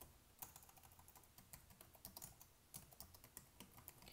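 Faint typing on a computer keyboard: a run of quick key clicks at an uneven pace.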